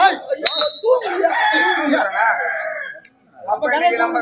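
A long crowing call, a rooster's cock-a-doodle-doo, held for almost two seconds, with a sharp metallic click just before it and voices around it.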